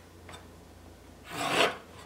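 A pencil drawing a line along a speed square on a rough-sawn board: a faint tick, then one short scratchy stroke a little past a second in.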